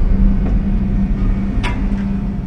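Low, steady rumbling drone with a constant hum, the ominous background sound of a horror reenactment, with one sharp click about one and a half seconds in.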